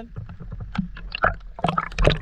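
Sea water splashing and sloshing in short, irregular bursts as a freediver's fins break the surface and the camera goes under. The louder splashes come in the second half.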